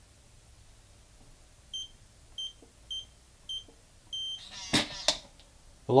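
Atlas EL703 electronic cabinet lock's keypad beeping five times as a code is keyed in, the last beep a little longer. A short rattle and two sharp clacks follow as the lock releases and its spring-loaded plunger pushes the locker door open.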